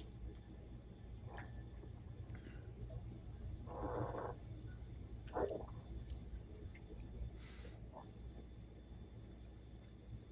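Quiet room with a low hum and a few faint, short mouth noises of bourbon being sipped and tasted, the clearest about four seconds in and another shortly after.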